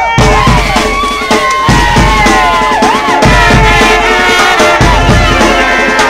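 Marching band playing: brass horns over a pulse of bass and snare drums, with sliding, bending notes.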